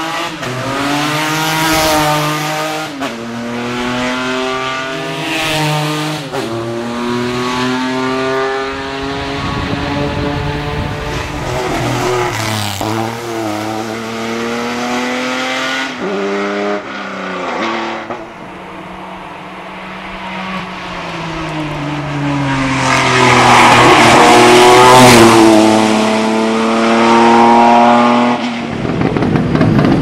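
Ford Sierra 4000 hill-climb race car engine at full throttle, accelerating hard up through the gears, the revs climbing and dropping sharply at each upshift. It fades a little around the middle, then grows loudest in the last third as the car runs close by.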